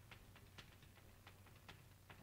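Chalk tapping and ticking on a blackboard as a formula is written: faint, irregular short clicks over a low steady room hum.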